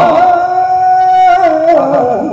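Male voice singing a ghazal in the Hindustani style: one long high note held steady, then in the last half-second the pitch drops in a wavering ornamental run.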